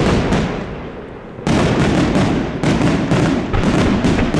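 Aerial fireworks shells bursting overhead: a sharp bang at the start and another heavy burst about a second and a half in, then a rapid run of bangs and crackles, several a second, as a salvo of white glittering shells goes off.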